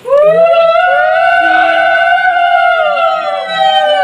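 A conch shell (shankha) blown in one long, loud note that swoops up at the start, holds steady and falls away at the end, as is done at a key moment of a Bengali Kali Puja.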